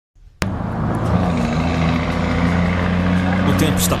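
Scania truck's diesel engine running steadily as the truck approaches, amid roadside crowd noise, with a couple of short hissing bursts near the end.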